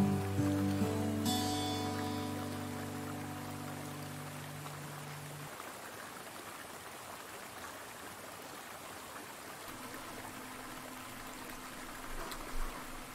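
The last notes of a song ring out and fade away over the first five seconds or so. After that only the faint, steady rush of a mountain stream is left.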